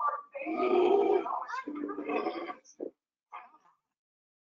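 Polar bear roaring, played back over computer audio: one long call with several pitches starting about half a second in and lasting about two seconds, then a short quieter call near the end.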